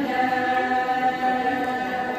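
Chorus of voices chanting a ponung song of the Adi Solung festival, holding one long note in unison until near the end.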